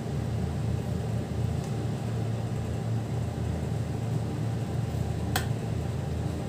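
A steady low mechanical hum, even in level throughout, with one sharp click about five seconds in.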